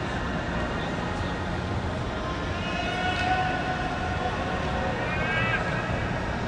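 Steady low rumble of a big ballpark's ambience during practice, with distant voices calling out briefly twice, about halfway through and near the end.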